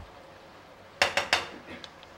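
A quick run of sharp metallic clinks about a second in, a kitchen utensil knocking against metal cookware.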